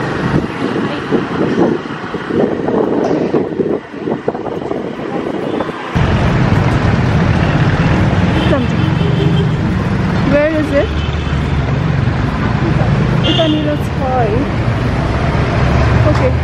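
Street traffic: engines of passing motorbikes and cars. About six seconds in the sound changes abruptly to a louder, steady low rumble.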